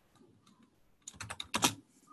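Typing on a computer keyboard: a quick run of several keystrokes in the second half, after a near-silent first second.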